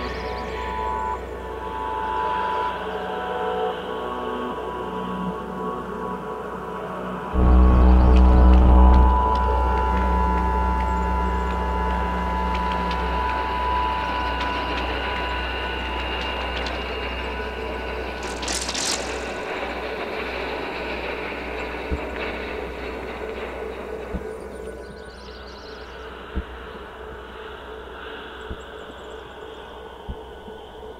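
Live electronic synthesizer music made of sustained drones and held tones. A deep bass drone cuts in suddenly about a quarter of the way through and slowly fades. The music thins to a quieter bed near the end, with a few faint clicks.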